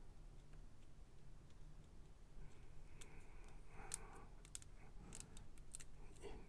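Faint, scattered small clicks of a Bandai Metal Build Gundam 00 Qan[T] figure's shield parts being handled and pressed together, mostly in the second half.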